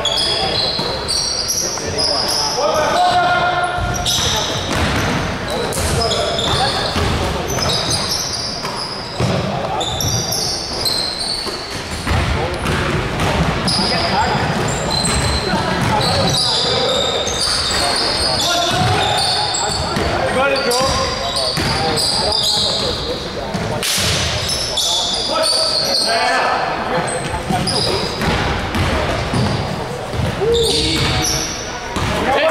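Basketball game play in an echoing gymnasium: the ball dribbling and bouncing on the hardwood floor, sneakers squeaking, and players' voices calling indistinctly.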